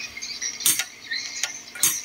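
Two sharp clicks about a second apart, over faint high-pitched chirping.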